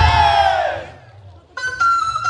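A group of voices gives a loud shout together that slides down in pitch and dies away within a second. After a short pause, music with a flute melody starts again about a second and a half in.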